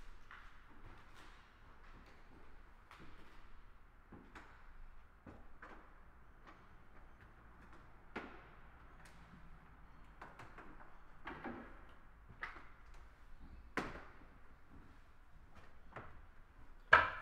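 Faint, scattered knocks and clicks of a person moving through a quiet, empty room, with a few sharper knocks in the second half, the loudest about two seconds before the end.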